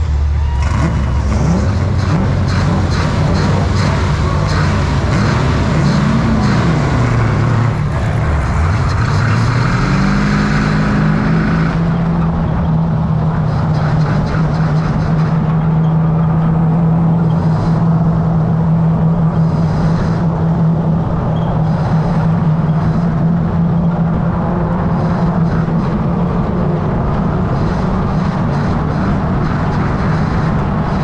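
Race car engine heard from a hood-mounted camera: idling, revved up and back down briefly about six seconds in, then accelerating from about eight seconds as the car pulls away, and from about eleven seconds holding one steady pitch at constant speed.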